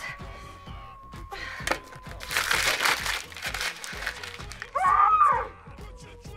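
Background music with a held note runs throughout. About two seconds in comes a rustling hiss lasting a second or so, and near the end a loud frustrated groan from a young woman.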